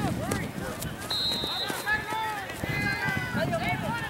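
Overlapping shouts and calls from players and spectators on a soccer field, none close enough to make out words. About a second in, a brief steady high-pitched tone sounds.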